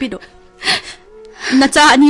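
A person crying in a radio drama: a sharp breathy gasp, then a wavering, sobbing voice that grows loudest near the end, over a quiet held music underscore.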